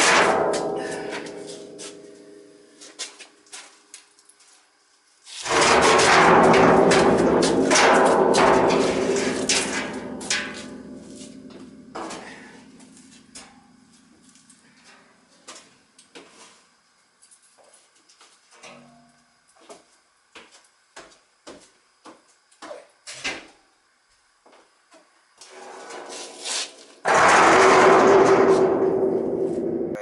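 Cut-apart sections of a steel heating-oil tank being handled and set down: a clang at the start, a louder clang about five seconds in that rings and fades over several seconds, and another ringing clang near the end. Small knocks come in between.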